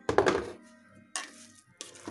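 Lid of a Lumme electric pressure cooker being opened and lifted off, with a clatter of metal and plastic in the first half second, then two short knocks later on.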